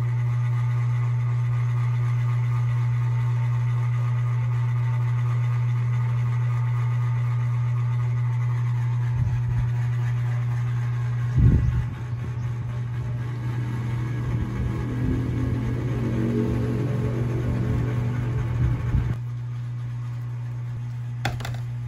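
A steady low hum, joined in the second half by an irregular low rumbling with one sharp jolt partway through.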